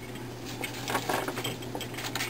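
Faint light clicks and rustling from hands working at a wooden jack loom, handling the shuttle and the warp threads in the shed.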